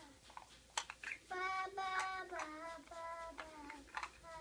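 A young child singing softly to herself, a short tune with several held notes, with a couple of small clicks in between.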